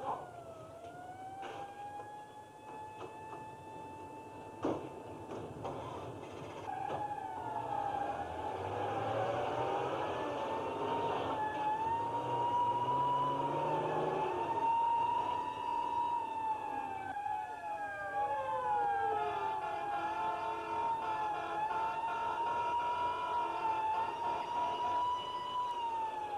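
Vehicle sirens wailing, winding up at the start and then holding a high, wavering pitch, with a second siren's pitch sliding down about two-thirds of the way through.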